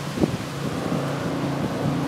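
Approaching GE ES44C4 diesel locomotives at the head of a freight train, a steady low engine drone, with wind buffeting the microphone.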